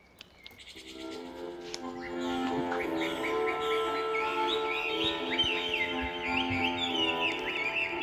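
Accordion playing an introduction, fading in about a second in with held notes that swell in level. Birds chirp in the background.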